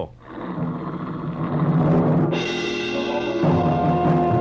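Orchestral bridge music with timpani under low sustained instruments, swelling in loudness, with higher instruments joining a little past halfway.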